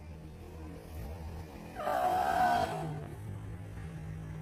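Low, steady droning film score, with a short, louder held high note about two seconds in.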